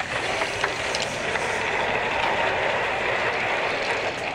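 Casters of a wheeled skeleton-model stand rolling steadily across a hard floor, starting abruptly just before and keeping an even level throughout.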